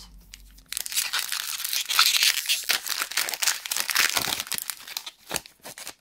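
Foil wrapper of a Pokémon Sun & Moon booster pack crinkled and torn open by hand: a dense run of crackling starts about a second in and dies away near the end.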